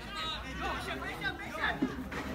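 Sideline spectators chattering: several voices talking and calling out over one another close by.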